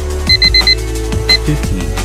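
An interval timer's electronic beeps, four quick ones and then a fifth a little later, marking the end of an exercise interval and the start of a rest. Under them runs electronic drum-and-bass backing music with a steady beat.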